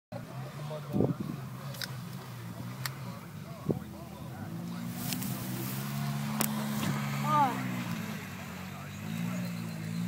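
ATV engine running steadily as the quad churns through a mud hole. The engine gets louder and higher about halfway through as the rider gives it throttle.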